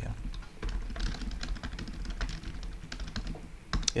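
Typing on a computer keyboard: an irregular run of quick keystroke clicks as a line of code is entered, over a steady low hum.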